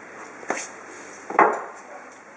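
Two short knocks from kitchen handling on a plastic cutting board, a small one about half a second in and a louder one about a second and a half in.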